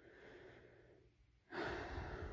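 Near silence, then about one and a half seconds in a man draws in a breath, a soft steady rush of air.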